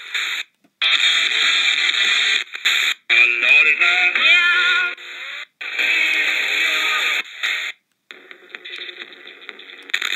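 Eton Elite Mini AM/FM/shortwave radio scanning the FM band through its small speaker. It stops on station after station, giving snatches of broadcast audio, mostly music, each cut off by a brief muted gap as it jumps to the next station. The gaps come about half a second in, then at about 3, 5.5 and 8 seconds.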